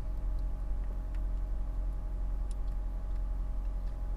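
Steady low hum inside a car cabin, with a few faint clicks as soda is gulped from a plastic bottle.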